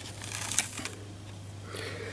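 Faint handling noise of fingers rubbing and pressing on a small taped circuit board, with a few light clicks about half a second in, over a steady low hum.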